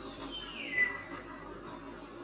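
A single high, whistle-like animal call that slides down in pitch and then holds a steady note, about a second and a half long, over faint steady outdoor background noise.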